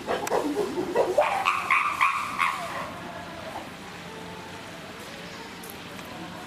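Chimpanzees calling: rising calls in the first second, then a quick run of about four short, high-pitched calls that stop about two and a half seconds in.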